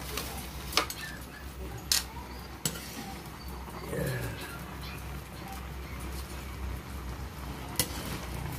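Metal spatula tossing noodles and cabbage in a large aluminium wok, with sharp clinks of metal on the pan about a second in, at two seconds, near three seconds and near the end, over a steady low hum.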